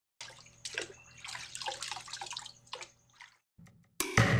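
Water sound effect: sloshing and bubbling in uneven surges, with short falling gurgles, for drawn sea waves. It breaks off a little before the end.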